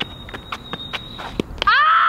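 A few scattered light taps, like a child's running footsteps on pavement, over a faint steady high tone; then, about one and a half seconds in, a child's loud cry that falls in pitch.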